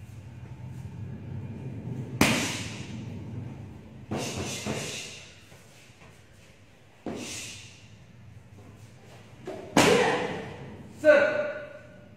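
Strikes landing on a hand-held kick pad: about half a dozen sharp slaps and thuds at uneven intervals, the loudest about two seconds in and in the last couple of seconds, each echoing briefly in a large hall.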